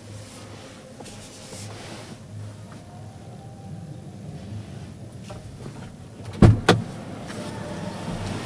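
Steady exhibition-hall background hum, heard from inside a parked van's cabin, with two sharp knocks a fraction of a second apart about six and a half seconds in.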